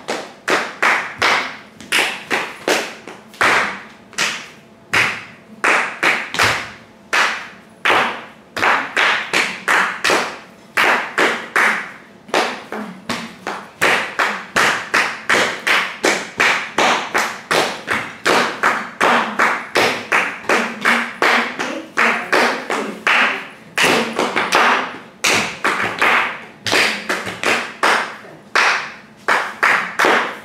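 Bare feet slapping and stamping on a hard tiled floor in a steady dance rhythm, a few sharp strikes a second, with no voice reciting over them.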